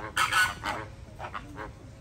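Flamingos honking: a loud call just after the start, then several shorter honks.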